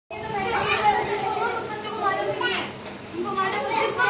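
Several young children chattering and calling out over one another, with no clear words.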